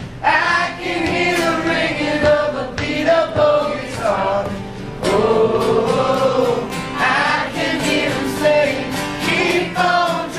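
Unamplified live band performance: several voices singing together over strummed acoustic guitar.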